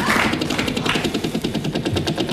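Game-show prize wheel spinning, its pegs clicking rapidly and evenly past the pointer.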